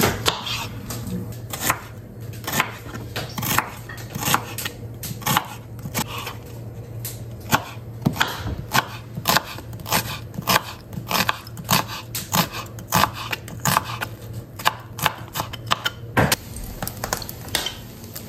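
Kitchen knife chopping an onion on a wooden cutting board: a run of sharp, irregular knocks, about two or three a second, which stops shortly before the end. A steady low hum sits underneath.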